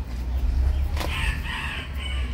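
A rooster crowing, starting about a second in, over a steady low hum.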